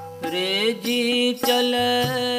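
Shabad kirtan: a man sings a devotional line in long, gliding notes to harmonium (vaja) accompaniment, with tabla strokes marking the beat. The voice comes in about a third of a second in after a short dip.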